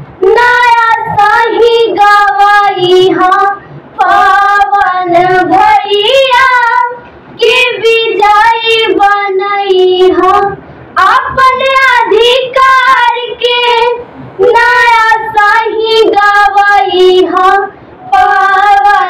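Two girls singing a Bhojpuri song together, unaccompanied, in phrases of about three and a half seconds with a short pause for breath between each.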